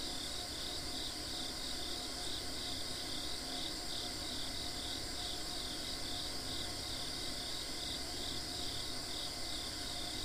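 Outdoor insect chorus: regular chirps at about three a second over a steady high-pitched trill, even and unbroken throughout.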